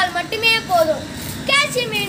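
Only speech: a boy speaking in Tamil.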